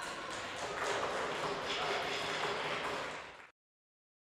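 Spectators applauding in an indoor court after a point, mixed with voices, cutting off suddenly near the end.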